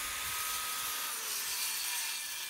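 Corded electric circular saw running and cutting through a 4x4 wooden beam: a steady high whine with a hiss of the blade in the wood.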